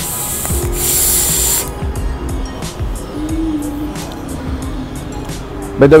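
A loud hiss lasting about a second and a half at the start, like air or spray being released, over a low street rumble and steady background music.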